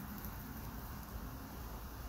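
Quiet, steady background noise, mostly a low hum, with no distinct event.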